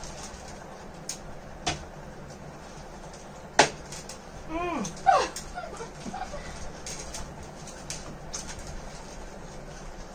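People eating a crunchy fried lentil snack straight off plates with their mouths, with faint crunching and a few sharp clicks, the loudest about three and a half seconds in. About halfway through there is a short falling vocal sound and a stifled giggle.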